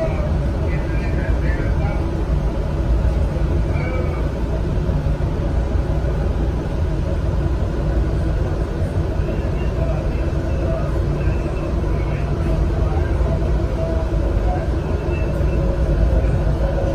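Metrorail train running along elevated track, heard from inside the front cab as a steady low rumble.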